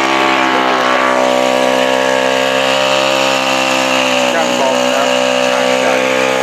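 Small drag-racing motorcycle engine running at steady high revs, its pitch holding level throughout.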